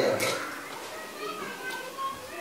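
A man's loud speech stops right at the start. After it, faint children's voices and chatter carry on in the background.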